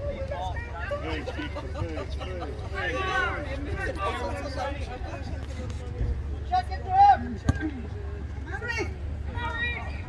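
Soccer players and people on the sideline shouting and calling out across the field, in short separate calls, the loudest about seven seconds in, over a steady low rumble. A single sharp thump comes shortly after the loudest shout.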